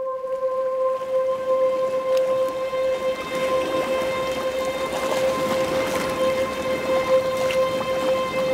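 Rain falling at a steady rate, starting right at the beginning, over a steady ringing musical drone that holds one pitch throughout.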